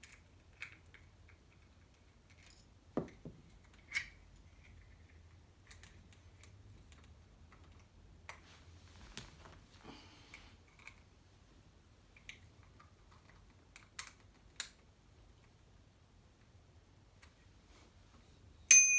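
Faint, scattered clicks and taps from a small handlebar bell's clamp and an Allen key being handled on a kids' scooter's metal stem, with a few sharper clicks among them over an otherwise quiet room.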